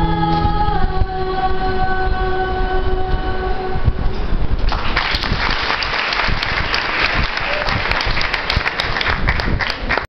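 Children's choir holding the final chord of a carol for about four seconds, then audience applause starting just under five seconds in.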